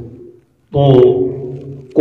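Speech only: a man's lecturing voice trails off, pauses briefly, then holds one long drawn-out syllable, "to", at a steady pitch.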